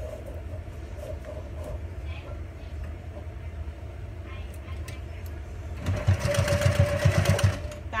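Electric sewing machine running briefly near the end, a burst of about a second and a half of rapid stitching as a zipper is started onto fabric with a zipper foot. Before it, only quiet handling of the fabric and zipper under the presser foot, with a few faint clicks.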